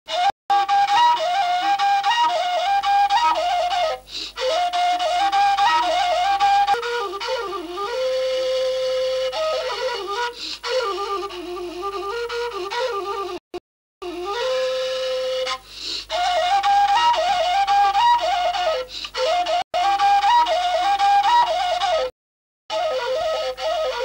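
Solo flute playing a wavering, ornamented melody as title music, cutting out to silence briefly about halfway through and again near the end.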